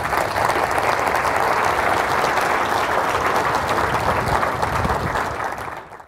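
Audience applauding, steady and dense, dying away near the end.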